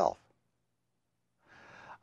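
The end of a spoken word, then silence, then a man's in-breath about a second and a half in, growing louder just before he speaks again.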